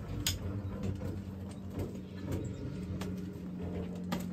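Low steady hum with a few scattered knocks and clicks as rifles and gear are handled in a mock trench.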